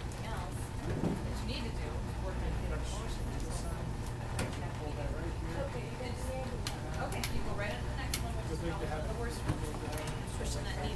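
Crutch tips and feet knocking on wooden practice stairs during a slow climb, a few sharp knocks spaced irregularly over the second half, over a steady low hum and faint background voices.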